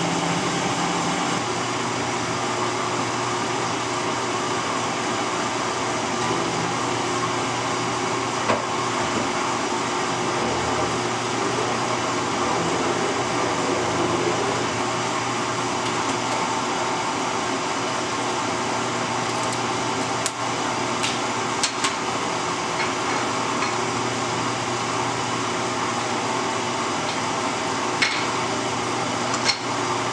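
Steady electric machine hum that holds an even level throughout. A few light clicks and taps of metal being handled come in the second half.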